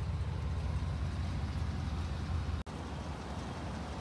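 Steady low background rumble with no speech, cut off abruptly for an instant about two and a half seconds in and carrying on a little quieter after.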